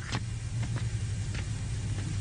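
Footsteps on a paved street, a sharp step every half second to second, over a steady low hum.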